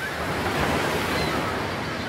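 Steady, loud rushing of churning water, with a few faint short high chirps over it.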